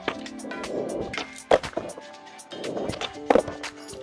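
Skateboard wheels rolling on rough concrete with sharp clacks of the board hitting the ground, two of them loud, one a little before halfway and one late, over background music.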